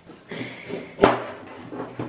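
A kitchen knife cutting through an orange, with one sharp knock about a second in as the blade comes down on the cutting board, and a smaller knock near the end.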